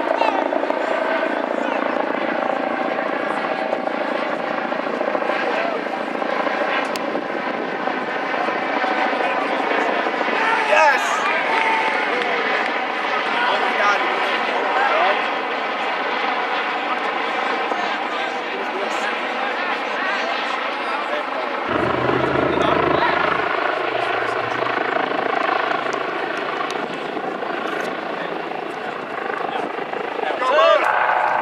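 A steady mechanical engine drone holding one pitch throughout, with shouting voices now and then.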